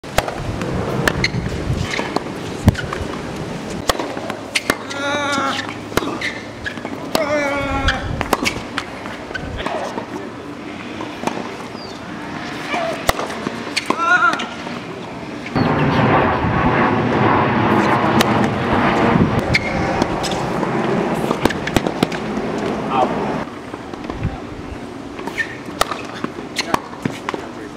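Tennis rackets striking a ball: repeated sharp hits at irregular intervals, with people talking in the background.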